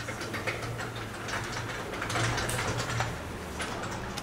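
Chalk on a blackboard being written with: a quick run of small taps and scratches, over a steady low hum.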